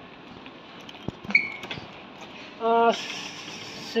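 Airport terminal background noise, with a few faint clicks and a brief high beep about a second in. A short voiced sound comes about two-thirds of the way through.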